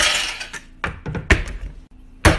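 Knocks and thuds of a block of canned luncheon meat being slapped down and struck on a cutting board. A loud hit opens it with a short hiss trailing after, then three quicker knocks follow in the second half.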